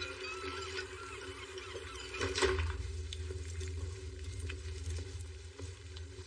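Harbourside background ambience: a steady low rumble and wash of noise, with a few short high calls in the first second and a brief swell about two and a half seconds in.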